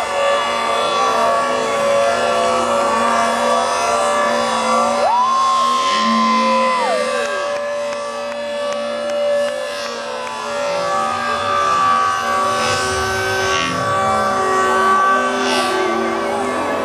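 Live electronic dance music played loud over a festival sound system: sustained synth chords with siren-like pitch sweeps that rise, hold and fall.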